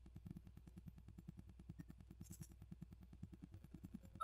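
Near silence: faint room tone with a low hum and a faint, even low pulsing about ten times a second.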